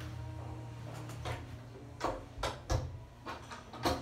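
Windows being pushed and latched shut: a handful of separate knocks and clicks over a steady low hum.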